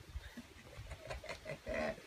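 Faint low bumps and a few light knocks of handling, with a brief murmur of a man's voice near the end.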